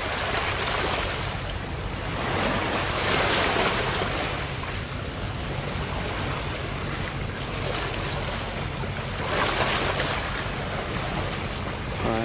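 Steady low hum of a boat engine under a rushing wash of water and wind, the water noise swelling about three seconds in and again near ten seconds.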